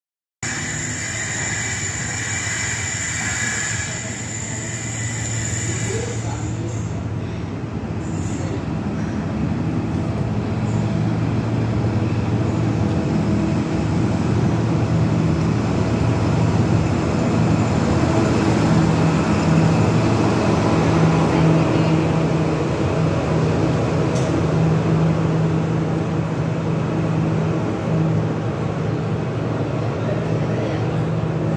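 A blue Pullman HST, a diesel train with a Class 43 power car, running into a station platform. Its engine drone builds as the power car passes close by, then its coaches roll past. The first few seconds hold a different, hissier train running noise, heard from aboard a train.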